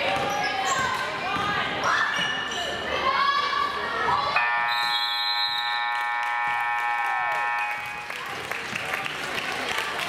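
Gym scoreboard horn sounding one steady buzz for about three and a half seconds, starting a little before halfway, as the clock runs out to end the second period. Before it, spectators shout and a basketball is dribbled on the hardwood floor.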